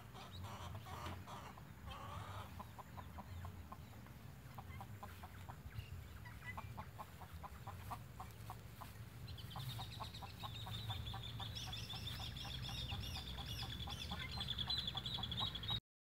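Hens clucking in short, repeated calls, about three a second, over a faint low rumble. From about ten seconds in, a high, rapid, pulsing chirping joins in and grows louder.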